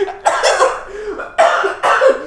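A man coughing in three bursts, each under a second long, in a coughing fit.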